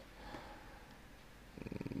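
A pause in a man's speech: a faint breath early on, then his voice starting up again near the end with a low, creaky hesitation sound.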